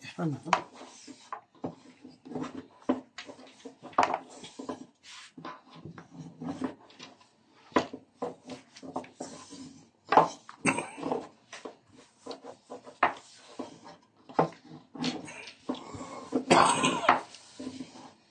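Long thin wooden rolling pin (oklava) rolling out a sheet of yufka dough on a floured board: repeated irregular knocks and rubs of the pin as it is rolled back and forth under the palms.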